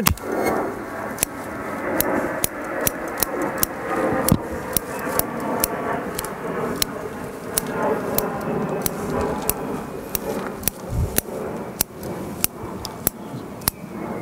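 Bonsai scissors snipping off the shoot tips of a Japanese maple: sharp, irregular clicks about two or three a second, over steady background noise.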